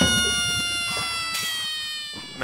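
Intro music over the title card: a long held brass-like note that slides slowly down in pitch and fades away.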